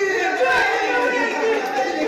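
Actors' voices during a stage scene, several people speaking and calling out over one another.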